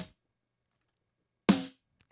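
A single snare drum hit about a second and a half in, with a short ring, heard from the multitracked snare recording played back through a gate and EQ; the gate leaves dead silence around the hit.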